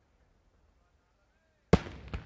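A single sharp firework bang from a daytime aerial shell bursting, coming suddenly near the end after a nearly quiet stretch, with a short echoing tail.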